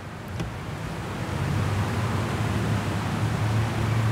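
A steady low rumble with a hiss over it, swelling over the first second and a half and then holding steady.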